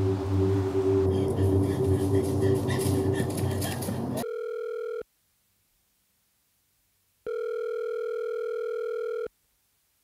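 Loud, dense trailer score with a steady low drone, cutting off abruptly about four seconds in. After it, an electronic telephone ringing tone sounds twice, once briefly and once for about two seconds, with dead silence around each ring.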